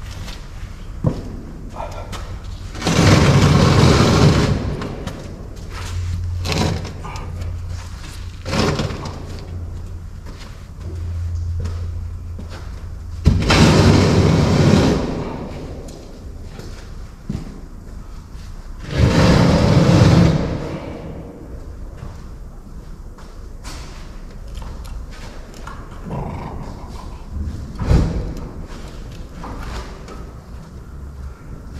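Heavy work noise echoing in a large steel hall. There are three loud rumbling rushes of a second or two each, about three, thirteen and nineteen seconds in, over an on-and-off low hum and scattered knocks and clanks.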